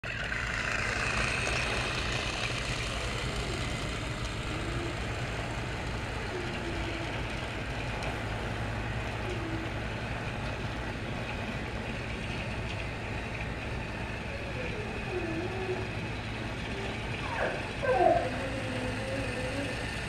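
Battery-powered TrackMaster toy train engine running along plastic track, its small electric motor giving a steady hum. A brief louder sound rises over it near the end.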